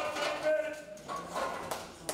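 Voices calling out in a weight room, with a sharp knock about a second and a half in.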